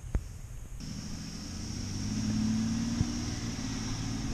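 School bus engine running with a low, steady rumble that grows louder over the first couple of seconds and then holds steady. A sharp click comes just before it.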